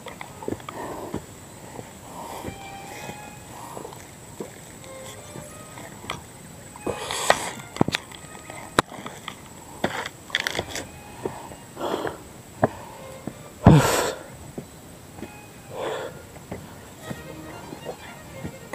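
Footsteps of a hiker walking uphill on a dirt forest trail, with rustling and breathing, a few louder thumps about seven and fourteen seconds in; faint background music may lie underneath.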